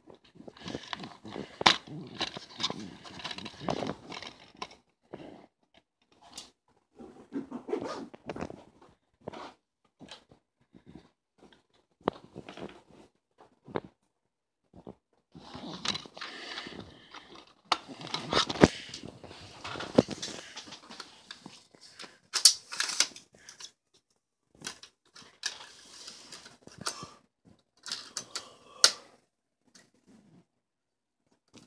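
Hands handling a plastic DVD case and its disc: irregular clicks, taps and rustling as the case is opened and the disc is lifted out.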